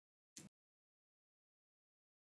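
Near silence: a blank sound track apart from one brief, faint click just under half a second in.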